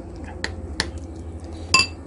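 Metal fork clicking against a ceramic bowl while mixing chopped boiled egg and mayonnaise: a few light taps, then one louder ringing clink near the end. A low steady hum runs underneath.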